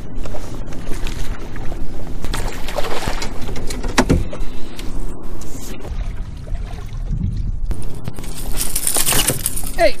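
A hooked largemouth bass splashing at the surface as it is played to the side of the boat, with scattered knocks and clicks. There is a low thump about four seconds in, and a louder splashy rush about nine seconds in as the fish comes out of the water.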